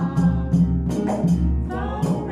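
Acoustic world-folk song played live: a woman singing over an acoustic guitar, with a bendir frame drum and a deep dundun drum beating a steady rhythm.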